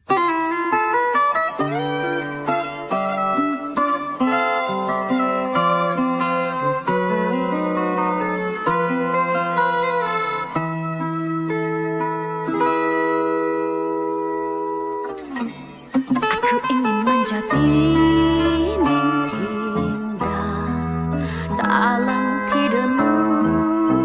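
Fingerstyle acoustic guitar playing a slow melody. After a brief pause about fifteen seconds in, a deep electric bass line comes in under the guitar.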